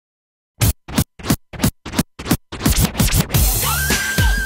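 Vinyl scratching on a Technics turntable, chopped into six short strokes about a third of a second apart, then running on continuously, with a beat joining near the end.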